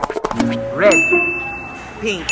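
Sound effects laid over a title card: a quick run of clicks, then a bell-like ding that rings on, with a few short tones bending up and down in pitch beneath it.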